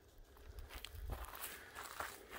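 Footsteps crunching through dry leaf litter and twigs, starting about half a second in.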